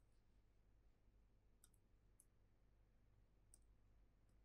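Near silence: a low steady room hum with a few faint, brief clicks, two of them about a second in and near the middle, one near the end.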